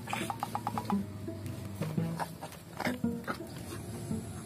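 Background music with a steady low tone. Near the start a quick even run of clicks lasts under a second, followed by scattered clicks and knocks.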